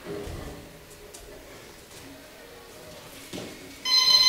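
Boxing gym round-timer buzzer going off near the end, a loud steady electronic tone marking the start of a sparring round. Before it, quiet gym room sound with faint voices and a few soft knocks.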